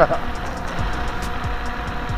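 Wind rumble on the microphone and a steady high whine from an electric scooter riding at speed, with a short laugh at the start.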